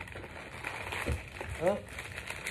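Seed packets rustling as hands sort through a plastic storage tub of seeds: a steady crackly handling noise with small clicks.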